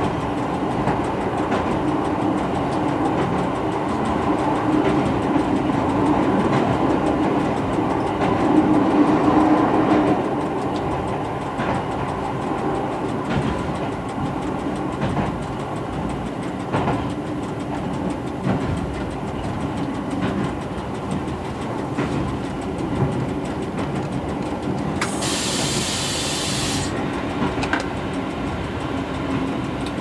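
Y1 diesel railcar, rebuilt with Volvo engines and Allison transmissions, running along the line as heard from the driver's cab, with wheels clicking over the rails now and then. The engine note is stronger in the first ten seconds or so, then eases. A burst of hiss lasting about two seconds comes near the end.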